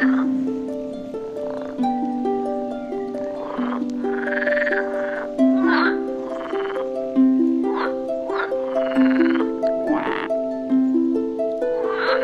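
Frogs croaking repeatedly, each call lasting about half a second to a second and coming every second or two. A simple background melody of stepped notes plays under them.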